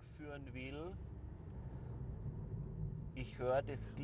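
Steady road and engine noise heard inside a moving car's cabin, with a man's voice briefly in the first second and again near the end.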